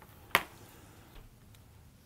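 One sharp click about a third of a second in.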